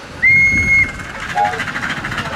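Short, high-pitched whistle blast from a miniature live-steam locomotive, held for about half a second, followed a moment later by a brief lower tone.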